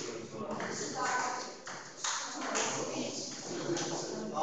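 A table tennis ball being hit in a rally: a few sharp, separate clicks of the celluloid ball striking paddles and the table, with voices in the background.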